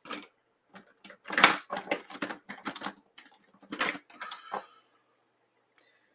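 Art supplies being handled on a desk: a series of irregular knocks, clicks and rustles as a pen is picked up, stopping about five seconds in.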